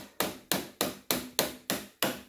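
Hammer tapping the end of a putty knife's handle, driving the blade between the skin and frame of a hollow core door to break the old glue joint. Light, even taps, about three a second, each with a short ring.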